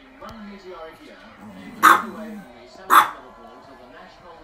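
Chihuahua barking sharply twice, about two and three seconds in, among softer vocal sounds.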